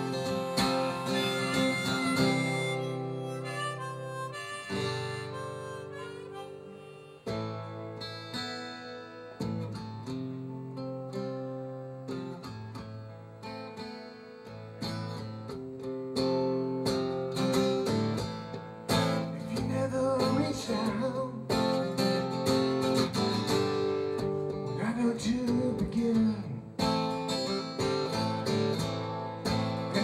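Harmonica played from a neck rack over strummed acoustic guitar: an instrumental break between sung verses of a song.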